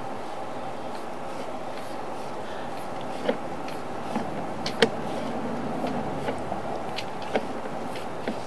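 Steady hum with a few sharp clicks and knocks, the loudest about halfway through, as a sewer inspection camera's push cable is fed down a cast iron sewer line.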